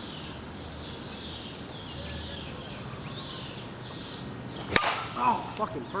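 A bat hitting a pitched ball with one sharp crack about three-quarters of the way in; the hit is a pop-up.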